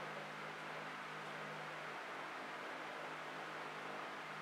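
Steady low hiss with a faint steady hum underneath: room tone, with no distinct events.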